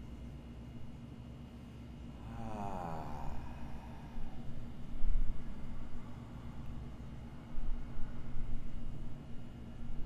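A person's voiced sigh, falling in pitch, about two and a half seconds in, over a steady room hum. A low thump follows about five seconds in.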